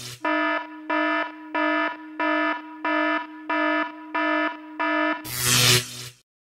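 Electronic alarm beeper sounding about eight even, pitched beeps at roughly one and a half per second. A loud rushing burst comes in near the end.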